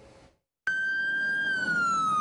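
Ambulance siren wailing: it cuts in suddenly after a brief gap, holds one high note, then starts a slow downward glide in pitch.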